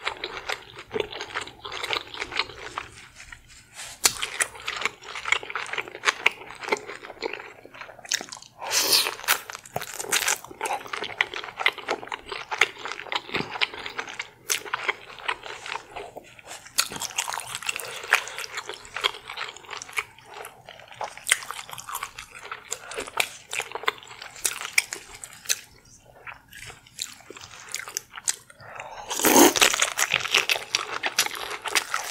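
Close-miked eating: biting into and chewing seafood thickly coated in creamy sauce, with wet mouth sounds and a dense run of small clicks. There are louder crunches about nine seconds in and just before the end.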